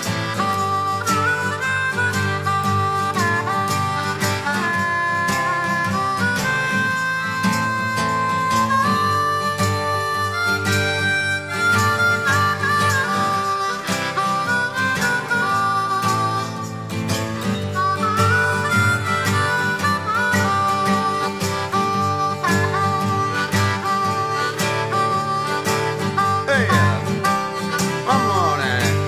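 Instrumental break of a live acoustic song: a harmonica solo of held, bending notes over strummed acoustic guitar.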